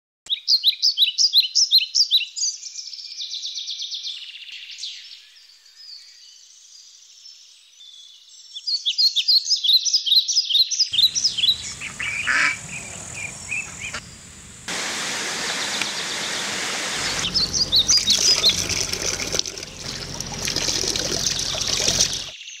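Small birds singing in runs of quick, repeated high chirps. From about halfway, a steady rush of running water joins in and grows louder toward the end, with birdsong still over it; this is water pouring from a wooden spout.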